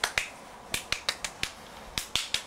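A run of sharp finger snaps from a hand held close to the microphone, about eight to ten in two seconds, in quick irregular bursts with a short pause after the first couple.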